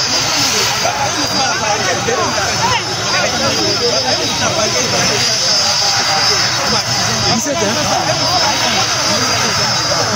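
Many people talking and shouting at once over the steady noise of a helicopter's engine running, with a thin steady whine.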